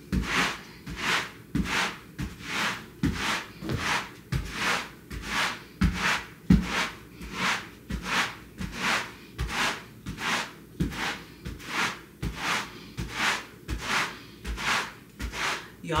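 Rubber broom's rubber bristles scrubbing back and forth over a freshly vacuumed rug, in steady strokes about two a second, with dull thuds underneath.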